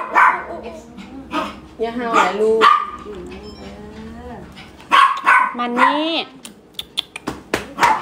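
A dog barking repeatedly in short barks, some with a rising or falling whine. Near the end comes a quick run of sharp clicks or taps.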